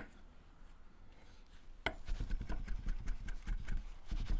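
Chef's knife chopping parsley on a wooden cutting board: a single knock at the start and another just before the midpoint, then rapid, even chopping strokes for the second half.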